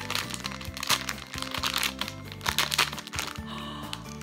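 Plastic squishy packaging crinkling and crackling in quick bursts as it is torn open by hand, over background music.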